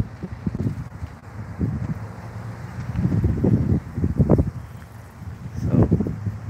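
Wind buffeting a phone microphone outdoors, a gusty low rumble that swells and fades.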